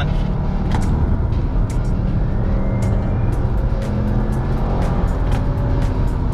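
Subaru WRX STI's turbocharged flat-four engine running hard at track speed, heard from inside the cabin. Background music plays over it.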